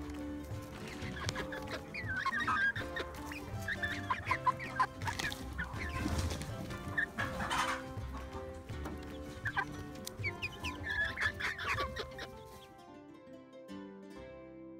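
Young Silkie chickens clucking and peeping in short, quick calls, heard close up over soft background music. The calls stop near the end, leaving only the music.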